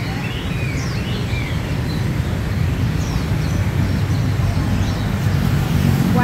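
Motorbike and car traffic passing on a city street, a steady low rumble, with a few short bird chirps scattered over it.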